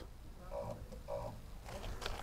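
Caravan mover's electric motors running in two short faint bursts as the caravan is nudged forward to close the stabiliser coupling's bellows and take the strain off the tow ball.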